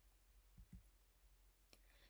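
Near silence: faint room tone with a couple of faint clicks.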